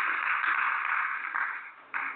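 Hiss on a telephone line that fades away in the second half, with one short click just before it dies out.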